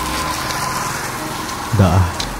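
Small motorcycle engine running steadily, with a man's voice briefly near the end.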